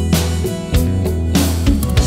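Instrumental pop music with held bass and chord tones under regular drum hits.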